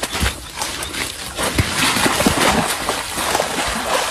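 Water splashing and sloshing in irregular slaps as a large fish thrashes in a net in shallow, muddy water, busiest in the middle.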